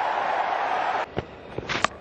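Steady cricket-ground crowd noise that cuts off about a second in to a quieter background, broken by a faint knock and then a sharp crack near the end: the ball striking the stumps as the batsman is bowled.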